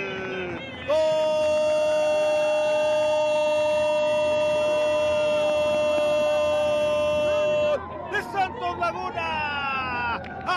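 Stadium goal horn sounding one long, unwavering note for about seven seconds after a goal, starting about a second in and cutting off suddenly.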